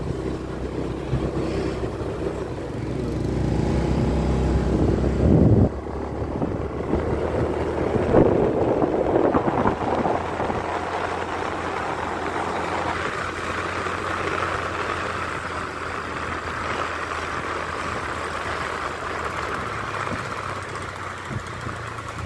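Vehicle on the move: engine and road noise, with a heavy low rumble that breaks off abruptly about six seconds in, followed by a steadier hiss of road and wind noise.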